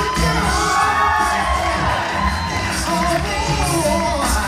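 Male a cappella group singing live: a lead tenor sings a gliding, ornamented solo line over the group's sung bass line and a steady vocal beat.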